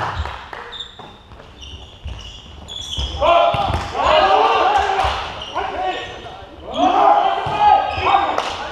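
Volleyball rally in a sports hall: the ball thuds off hands and arms a few times, and from about three seconds in, players shout loud calls to each other, with another shout near the end.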